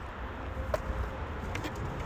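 Low, steady outdoor background rumble with a sharp click about a third of the way in and a few small ticks later.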